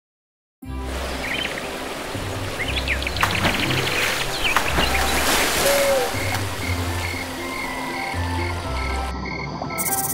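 Frogs croaking in a night-time pond soundscape, with chirping calls, over soft background music with low held notes. It starts about half a second in, and the high chirps drop out just before the end.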